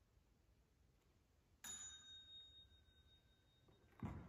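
A single light metallic ding about one and a half seconds in, a few clear tones ringing on and fading over about two seconds.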